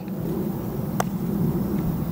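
A single short click of a putter striking a golf ball about a second in, over a steady low outdoor rumble.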